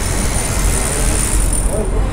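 City street traffic: a steady rumble of passing cars and a bus, with a high hiss that fades out about a second and a half in.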